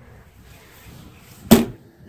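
An RV exterior compartment door shutting with one sharp bang about one and a half seconds in, most likely the propane compartment's slam-latch door.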